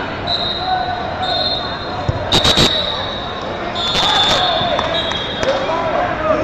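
Crowd chatter echoing in a large gymnasium, with two short shrill bursts about two and four seconds in.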